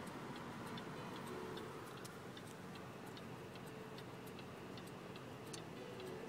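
A car's turn-signal indicator ticking steadily, about two to three clicks a second, over a low steady hum in the car cabin.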